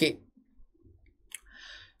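A man's spoken word trailing off, then a quiet pause broken by a single faint mouth click and a short breath before he speaks again.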